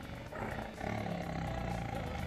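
Tiger cub vocalizing, starting about a third of a second in and carrying on.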